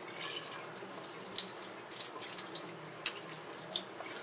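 Tap water running into a sink as a makeup brush's handle is rinsed by hand under the stream, with scattered small splashes and drips.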